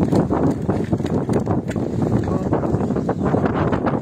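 Live fish flapping and knocking against a plastic weighing basket as a keepnet is emptied into it, a run of quick taps over wind buffeting the microphone.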